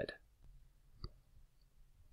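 Quiet room hum with one short, sharp click about a second in and a couple of fainter ticks around it.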